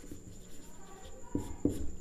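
Marker pen writing on a whiteboard: faint rubbing strokes, with two short, sharper strokes near the end.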